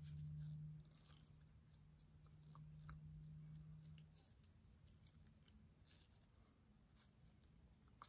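Near silence: a faint steady low hum that stops about halfway through, with a few faint small clicks and rustles.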